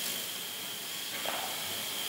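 Steady background hiss with a faint, steady high-pitched tone running through it, in a pause between spoken sentences.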